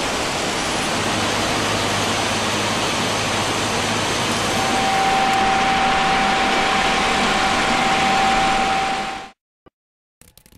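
Swietelsky RU 800 S track-laying machine working: a loud, steady machinery noise with a low hum, joined about halfway through by a thin, steady whine. The sound cuts off abruptly shortly before the end.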